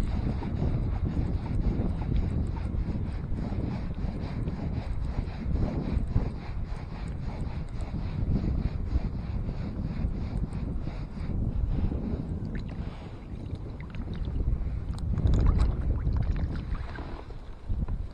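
Wind noise on the microphone, with a small multiplier fishing reel being wound in by hand, its gears giving a faint, fast ticking.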